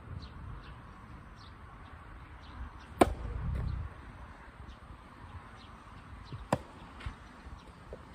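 Soft tennis rackets hitting the rubber ball in a rally: a sharp, loud pop about three seconds in, followed by a brief low rumble, then a lighter pop about six and a half seconds in.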